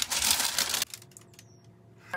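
Close rustling and crinkling of hands handling a synthetic wig, stopping a little under a second in.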